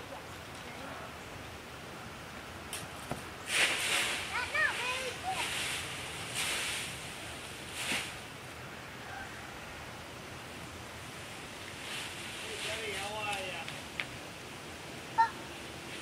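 Dry leaves crunching and rustling in a run of loud bursts a few seconds in as a child lands in a leaf pile and thrashes about, with a child's short wordless cries over it. Later come more brief vocal sounds and a single sharp click near the end.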